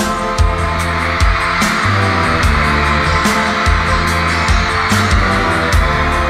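A live band plays an instrumental passage of a pop-rock song, with drums and bass keeping a steady beat under sustained pitched parts.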